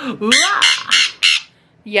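Pet conure giving a quick string of about five loud, harsh squawks.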